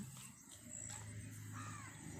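A faint bird call near the end, over a low steady hum.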